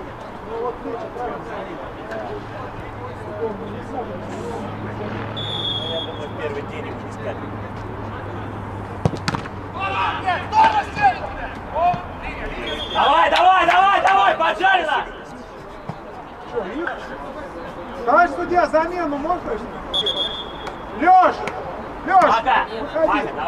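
Outdoor amateur football: a referee's whistle gives a short blast about five seconds in, and a sharp thud of a ball being kicked follows about nine seconds in. Players then shout across the pitch, loudest around the middle, and a second short whistle comes near the end.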